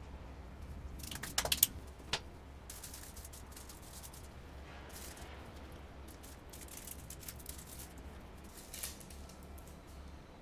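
Handling noises of dough being moved onto a parchment-lined baking tray: a quick cluster of sharp clicks a little over a second in, another click shortly after, then soft rustling of the baking paper and small clicks, over a low steady hum.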